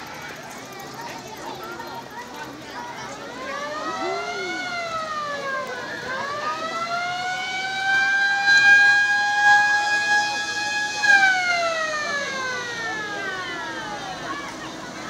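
Vintage fire truck's siren rising in pitch about three seconds in, dipping briefly, then rising again to hold a steady tone for several seconds before falling away near the end.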